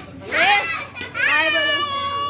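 Children's voices calling out greetings: a short rising call, then a long, drawn-out high call about a second in.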